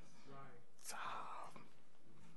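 A man's soft, breathy murmur at a microphone around the middle, over low room tone.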